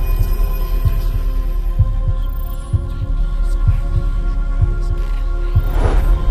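Cinematic trailer-style soundtrack: a deep heartbeat-like bass thump about once a second under a sustained droning chord, with a whoosh sweeping in at the very end.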